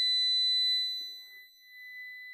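Xantrex Freedom XC 2000 inverter system's buzzer sounding one continuous high-pitched beep while its OK button is held down to enter the settings menu. The beep grows quieter after about a second and carries on at a lower level.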